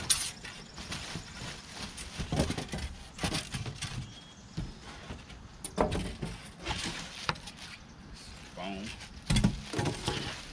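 Packaging being handled while unboxing: plastic wrap and foam sheets rustling and scraping in a cardboard box, in irregular bursts, with a dull thump near the end.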